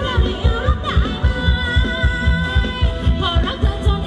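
Thai ramwong dance music from a live band: a singer over a steady, quick drum beat, playing loud throughout.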